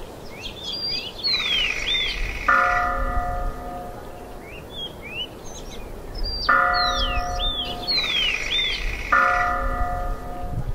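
Bell-like chimes ring three times a few seconds apart, with bird chirps and trills between and around them, over a low rumble.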